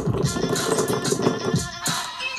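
Music with a steady beat playing back from a music-video edit.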